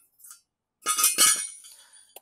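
Metallic clinking from the steel receiver hitch and its bolts being handled: a quick cluster of sharp clanks about a second in, followed by a thin high ringing that fades away.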